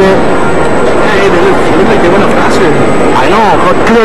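Loud, continuous voices whose pitch rises and falls, with no clear words.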